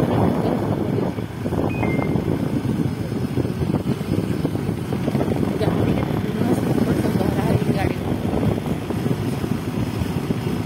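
Wind buffeting the microphone on a moving motorcycle or scooter, a dense, steady rush mixed with the two-wheeler's engine and road noise.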